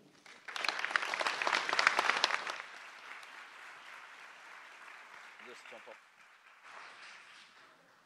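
An audience clapping: a burst of applause starting about half a second in, strongest for about two seconds, then dying away into scattered faint claps with a little murmur of voices.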